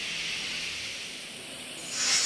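Steady rain falling: an even hiss that eases slightly toward the end.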